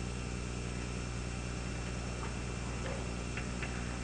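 Room tone in a pause between spoken sentences: a steady low hum with hiss, and a couple of faint ticks a little over three seconds in.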